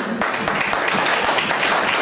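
Audience applauding, the clapping starting a moment in and holding steady.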